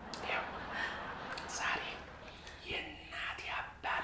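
A man whispering in short breathy phrases.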